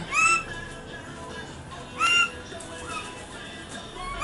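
Pied butcherbird whistling: a clear note that rises and then holds, given twice about two seconds apart, with a few fainter short notes between.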